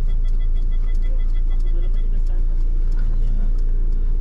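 Steady low rumble inside a car cabin, with a rapid high electronic beeping that runs for about the first two seconds and then stops.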